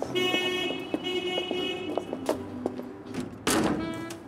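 A car horn sounds one long, bright honk lasting about two seconds, over quiet background music. A loud, noisy burst follows about three and a half seconds in, and the music comes up.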